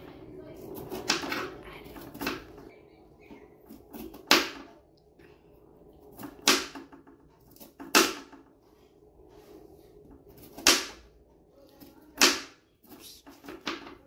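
Kitchen knife chopping cauliflower florets on a cutting board: about seven sharp knocks of the blade striking the board, irregularly spaced a second or two apart.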